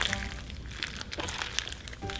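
Purple slime packed with lima beans being squeezed and swirled by hand, giving a steady crackle of small sharp clicks and pops.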